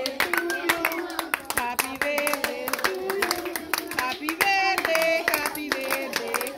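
A group of people clapping along in a steady rhythm while singing a birthday song together.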